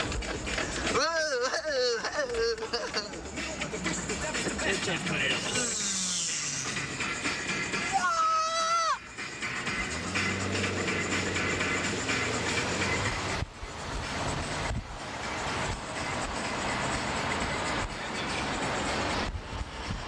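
Noise inside a moving car, with loud wavering vocal cries from the occupants, like whoops or yells, about a second in and again about eight seconds in.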